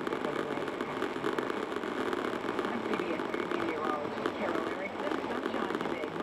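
A news radio broadcast playing in a car: a voice talking, muffled and indistinct, over the hum of the car on the road.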